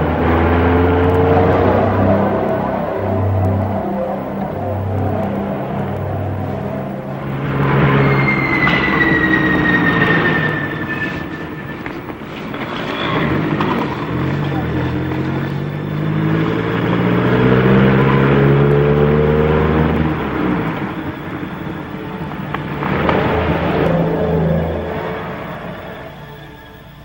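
Car engine running and accelerating, its pitch climbing in several rises. A thin high tone slides downward about eight seconds in.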